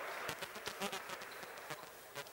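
Faint, scattered short squeaks and slaps from handball players on a wooden indoor court: shoe soles squeaking on the floor and hands meeting in high-fives.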